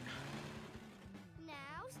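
Cartoon soundtrack: low background music under a steady rushing car sound effect, then a character's high voice shouts "now" about a second and a half in.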